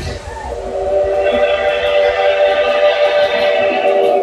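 A train-horn sound effect: a chord of several tones held steady for about three and a half seconds, starting just after the dance track's beat and bass stop.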